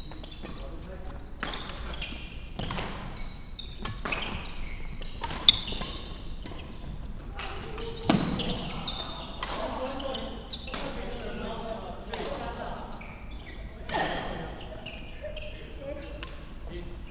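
Badminton rally: rackets striking the shuttlecock in quick succession, the sharpest hit about five and a half seconds in, with shoes squeaking on the wooden court floor. The hits echo in the large hall.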